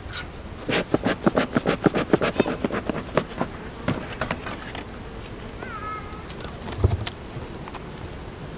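A beekeeper handling hive equipment: a rapid run of clicks and crackles for a few seconds, then a knock near the end as the hive cover is pried up with a hive tool. A short bird chirp comes just before the knock.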